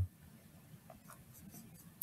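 Faint scratching of a marker writing on a whiteboard, a few short strokes in the second half.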